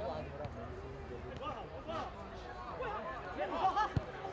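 Faint, distant voices of players and onlookers calling out around a football pitch, a little louder for a moment near the end.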